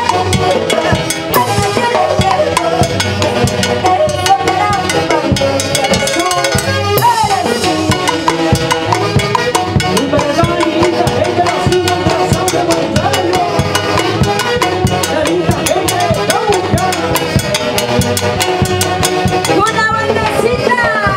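Live Andean band music with a steady beat: saxophones and clarinets play the melody over harp and drums.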